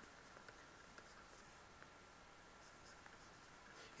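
Near silence with faint scratching of a pen stylus stroking across a drawing tablet.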